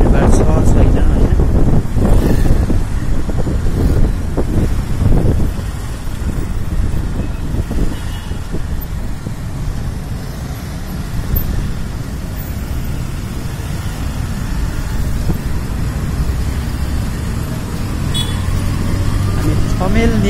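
Night street traffic heard from a moving motorbike: a steady low rumble of engines and road noise from the bike and the surrounding cars and scooters, loudest in the first five seconds.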